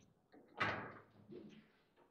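Table football play: the ball is struck by the rod figures and knocks against the table, with one loud sharp knock about half a second in and a few lighter knocks after it.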